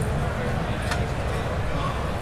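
Busy exhibition-hall ambience: a steady low rumble with indistinct background voices, and a faint click about a second in.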